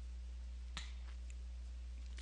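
Low steady electrical hum and faint recording noise, with one short faint click about three quarters of a second in.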